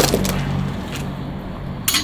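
The tail of a watermelon bursting under one blow from a homemade bladed weapon, at the very start, followed by low steady background music and a single sharp click near the end.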